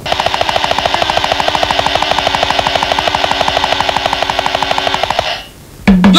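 A fast, even drum roll of about ten strokes a second over a steady low drone, cutting off about five seconds in.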